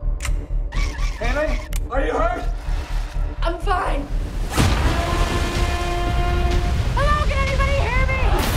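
Trailer soundtrack mix: a low pulsing music beat under short spoken lines, a deep hit about halfway through, then held music tones with more speech near the end.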